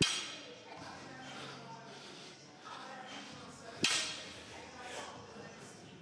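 Loaded barbell knocking down during conventional deadlift reps: two sharp knocks with a short metallic ring, one at the start and one about four seconds in.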